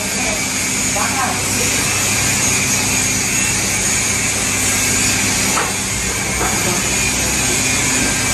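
Steady workshop machinery noise: a constant low hum under an even hiss, unchanging throughout.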